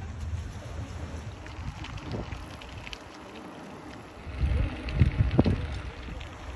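Wind buffeting the microphone outdoors, an uneven low rumble that gusts harder for about a second and a half near the end.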